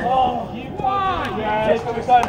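Several people's voices shouting and talking over one another, with no words clear.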